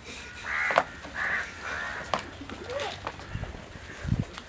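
A crow cawing: two harsh caws within the first second and a half, followed by fainter calls.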